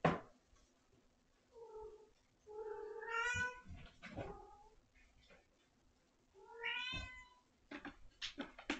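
Domestic cat meowing several times: short calls, a longer rising meow about three seconds in, and another meow near the end. A sharp click comes right at the start.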